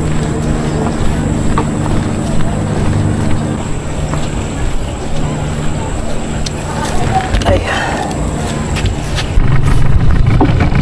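An engine runs steadily at idle with a constant low hum. About nine seconds in, a louder engine takes over.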